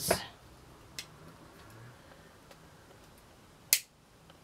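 Quiet handling of small craft items at a table: a faint click about a second in and one sharp click near the end.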